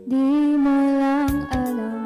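A woman singing live into a handheld microphone over backing music with guitar: she holds one long, slightly wavering note for over a second, then steps down to a lower note.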